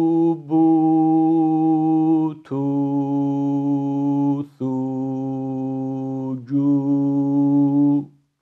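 A man's voice reciting Arabic letter-syllables on the long vowel 'ū', one at a time. Each is held about two seconds on a steady pitch with a short break between: about five in all, the first already under way. It is a tajweed drill in holding the natural prolongation (madd tabi'i) for one alif length, evenly on every letter.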